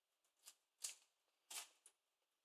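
Kitchen scissors snipping through a kipper's head just behind the gills: a few short, faint, crisp snips.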